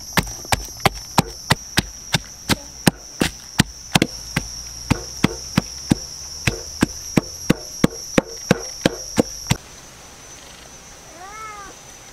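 Wooden pestle pounding garlic cloves and red chilies in a wooden mortar: about three sharp knocks a second, stopping suddenly about two-thirds of the way in. A steady high-pitched whine sounds behind the knocks.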